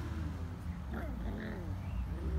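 Puppies vocalising while they play-fight: a few short, pitched whines and growls that bend up and down, over a steady low rumble.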